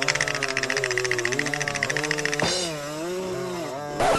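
Small 50cc mini dirt bike engine revving up and down, with a fast buzzing rattle in the first couple of seconds that then drops away as the revs fall.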